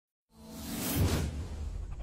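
A whoosh sound effect that swells up from silence over a low bass drone, loudest about a second in and then fading, as an intro sting.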